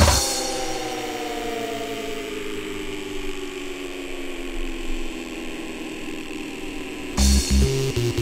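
Breakbeat DJ mix in a breakdown: the drums and bass drop out just after the start, leaving held synthesizer chords that slowly slide downward in pitch. About seven seconds in, a heavy bass line and beat come back in suddenly as the mix moves into the next track.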